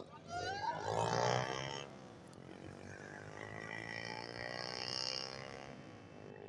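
Engine of a low-flying microlight trike droning overhead, loudest about a second in, then holding steady with its pitch sinking slightly as it passes.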